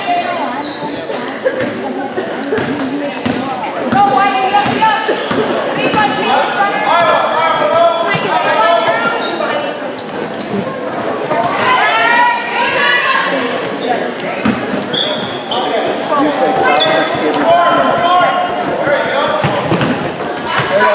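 Basketball game in an echoing gym: a ball dribbling on the hardwood floor, sneakers squeaking, and players and spectators calling out.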